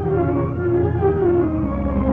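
Orchestral interlude of a 1950s Hindi film song: sustained melody lines that slide in pitch, over a steady low rumble.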